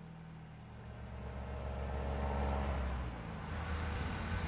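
Car engine running as a vintage convertible drives up, growing louder over the first couple of seconds.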